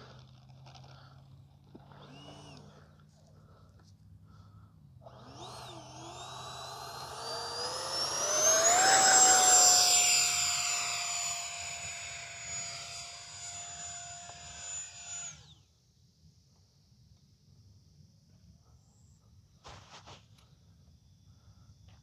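The 70 mm electric ducted fan of an E-flite Habu SS RC jet spooling up for its takeoff run. Its high whine rises in pitch over a few seconds and is loudest as the jet goes past. It then holds a steady whine that cuts off suddenly about two-thirds of the way through.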